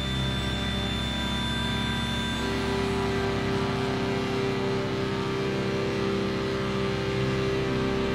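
Synthesizer music from a TTSH (an ARP 2600 clone), a Eurorack modular and a Polyend Medusa: a dense, steady drone of held tones. The chord shifts about two and a half seconds in, when a new lower tone enters and holds.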